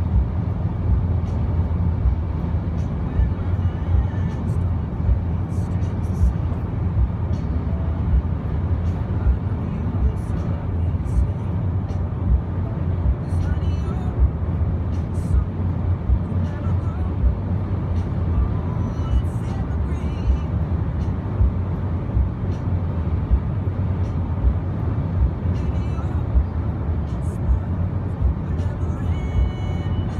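Inside a Jeep Compass at highway speed: steady low road and engine rumble in the cabin, with frequent small irregular thumps.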